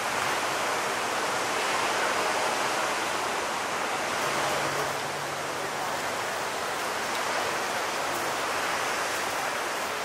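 Large ocean surf breaking, heard as a steady, even rush of water with no single crash standing out.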